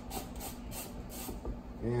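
A chef's knife slicing an onion on a wooden cutting board, in quick even strokes about four a second.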